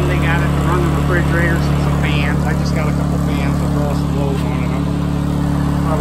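Honda EU2000i inverter generator's small single-cylinder four-stroke engine running at a steady, even pitch.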